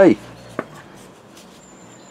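A single short click at about half a second in, as a fitting on the Lister D engine's crankcase is undone and comes away nice and loose; otherwise quiet.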